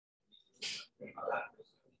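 Faint, indistinct voices: a brief breathy hiss, then a short low murmur of speech.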